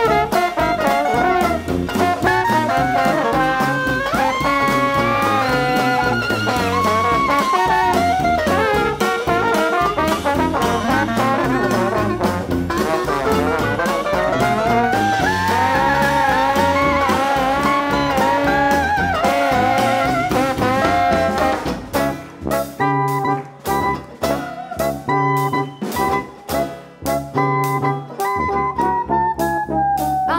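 A New Orleans-style jazz band playing live with brass and a sousaphone, in an instrumental passage with the horns weaving melodic lines. About 22 seconds in, the band switches to short, clipped chords with brief gaps between them.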